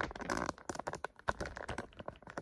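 Handling noise from a phone camera being picked up and repositioned: a rapid, irregular run of clicks, taps and rustles.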